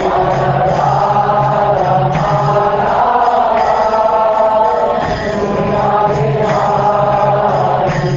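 Devotional chanting by voices over music, with sustained sung notes.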